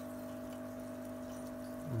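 Aquarium equipment running: a steady electrical hum with a faint trickle of water.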